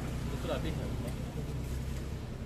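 Outdoor market background: a steady low rumble with faint voices, one brief voice about half a second in.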